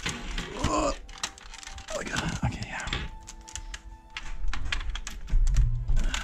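Irregular clicks and taps of a Ceda S blaster's plastic shell and metal retaining pins being handled and pushed back into place during reassembly.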